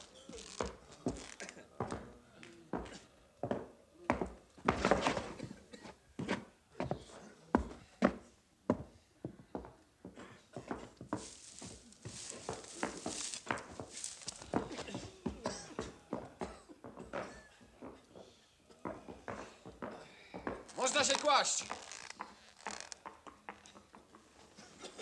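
Footsteps and irregular knocks on the wooden floor and bunks of a barracks, with shuffling and rustling, from a film soundtrack. Near the end there is a short, louder rasping sound.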